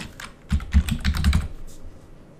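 Computer keyboard keystrokes: a quick run of typing that lasts about a second and a half, then stops, as a password is entered.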